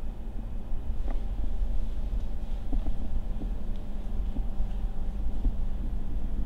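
Steady low hum of a spray booth's ventilation fan, with a few faint clicks.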